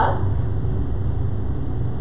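A steady low hum with an even background noise, holding level throughout; no other sound stands out.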